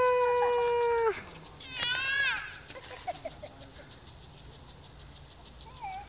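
A person's long, high-pitched squeal held for about a second, then a shorter squeal that slides down in pitch. Under it a spike-mounted impact lawn sprinkler ticks steadily, about five ticks a second.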